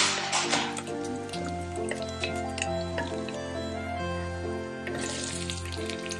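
Background music with steady held notes over sizzling in a pot of hot butter. A loud burst of sizzling comes at the start, and another about five seconds in as chopped red onion is slid off a cutting board into the hot butter.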